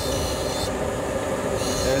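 Dental lab micromotor handpiece spinning a carbide bur against a PMMA prototype tooth, grinding its bulky facial surface thinner: a steady whine with a rasping grind. The lab vacuum runs underneath.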